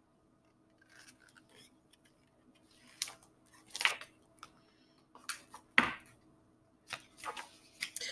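Pages of a hardcover picture book being handled and turned: several short, crisp paper rustles and swishes, the loudest about four and six seconds in.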